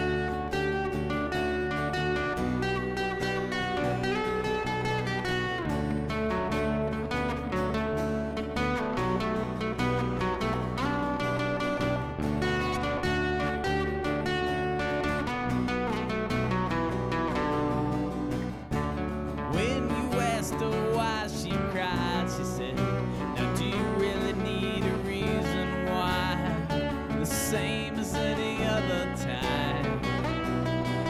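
Instrumental break of a live acoustic rock song: acoustic guitars strummed over bass guitar, with no singing. The playing gets brighter and busier about two-thirds of the way through.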